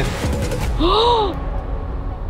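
A person's single short gasp about a second in, the pitch rising then falling, a gasp of suspense over whether the phone survived.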